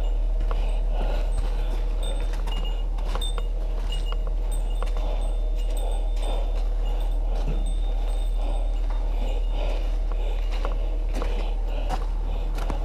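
Footsteps crunching on gravel with small bits of metal gear jingling in time with the walking, giving short high ringing tones every half second or so, over a steady low rumble.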